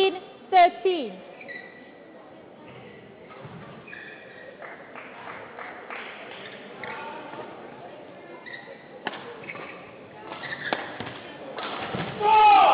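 A badminton rally: rackets strike the shuttlecock repeatedly and court shoes squeak briefly on the floor. It opens with a player's short shout, falling in pitch, in the first second.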